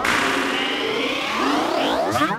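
Electronic music break: a synthesizer sweep of many swirling, gliding tones with the drums and bass dropped out.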